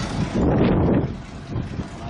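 Wind buffeting the microphone, with a stronger gust about half a second in that eases off after a second.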